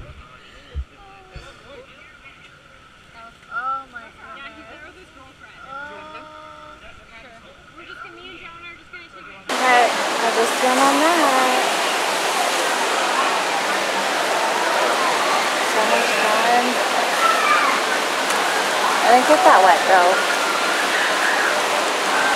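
Faint voices at first, then about ten seconds in a sudden change to the loud, steady rush of a whitewater raft ride's rapids, with people's voices over it.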